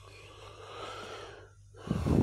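A person drawing one long breath in, swelling and then fading over about a second and a half.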